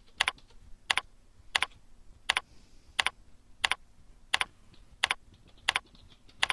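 Computer keyboard being typed one key at a time at an even, unhurried pace, about one and a half keystrokes a second, each a sharp double click.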